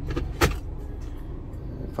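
A single sharp click about half a second in as the Toyota Vios's automatic gear selector lever is moved through its gate, over a steady low hum in the car's cabin.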